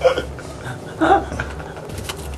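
Two short vocal sounds from a person, one at the start and one about a second later, over a steady low room hum.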